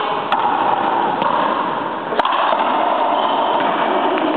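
Two sharp cracks of a racquetball being struck on an enclosed court, about two seconds apart, over a steady background din.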